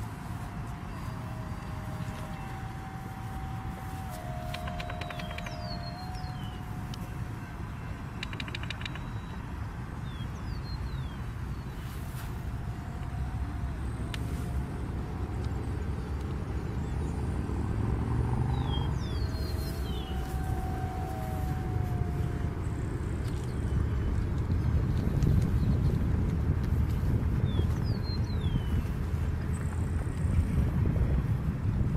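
Distant whine of an RC jet's electric ducted fan, a thin steady tone that steps up and down in pitch with throttle changes, over wind rumbling on the microphone that grows louder toward the end. A few short bird chirps.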